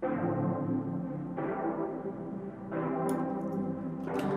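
Software synth pad on the CS-80 V playing a dark minor-key progression of seventh chords, three chords held in turn with a change about every second and a half. It is filtered, with a muffled top and its low end trimmed, and has reverb added.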